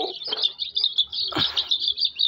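Many small caged birds chirping rapidly and without a break, high-pitched, with a few short calls that slide down in pitch.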